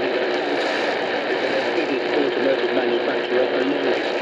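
BBC World Service speech on 7300 kHz shortwave coming from a Radiwow R-108 portable receiver's speaker, indistinct under steady static hiss from weak reception on the telescopic antenna.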